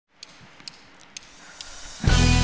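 Quiet studio-hall room tone with four brief, sharp clicks spread across it; the background slowly grows a little louder.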